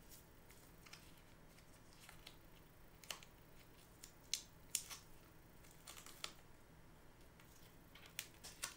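Near silence with a handful of faint, sharp crinkles and clicks, most of them in the middle: the paper backing and adhesive of an EKG electrode pad being handled and peeled with the fingers.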